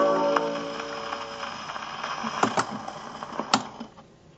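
The last held chord of a 1929 dance-band 78 rpm record fades out on a Columbia Viva-Tonal 204 portable gramophone. About halfway through, only the record's surface crackle is left, with a few sharp clicks.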